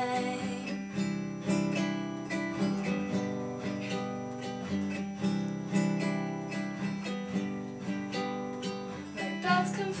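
Nylon-string classical guitar strummed and picked in a steady rhythm, about two strums a second, played as an instrumental passage without singing.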